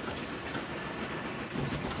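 A train running on rails, a steady rumble of wheels on track.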